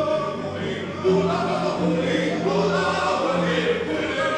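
Slow ensemble music of long held notes with a singing voice and cello, a low note sustained from about a second in until near the end.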